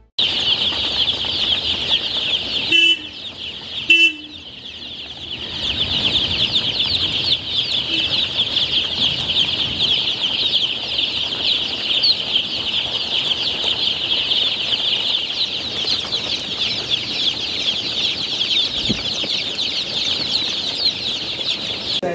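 A crowd of young chicks peeping nonstop in a dense, high chorus. Two louder calls stand out about three and four seconds in.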